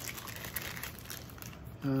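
Packaging crinkling and rustling as it is handled, a dense run of small crackles.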